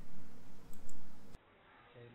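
Low steady background hum with a few faint clicks. It cuts off abruptly about a second and a half in, leaving near silence.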